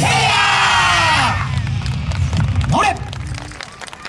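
A yosakoi dance team shouting together, many voices held for about a second over the last notes of the music. A single rising yell follows near three seconds, and then the sound drops off.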